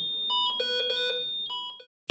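Hamilton T1 ventilator's alarm sounding: a chord of several steady electronic tones with a short pulsing tone in the middle, cutting off suddenly near the end. It signals a technical failure that has put the ventilator into its safety ventilation mode.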